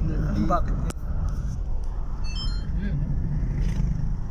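Steady low road and engine rumble heard from inside a moving car's cabin. A short run of high chirps sounds a little after two seconds in.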